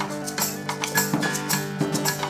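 Acoustic guitar playing sustained chords, with sharp percussive clicks about four to five times a second.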